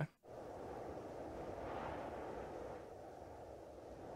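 Faint, muffled steady noise with no clear notes or tones, its upper range cut off and swelling slightly midway: the quiet opening of a music video playing in the background.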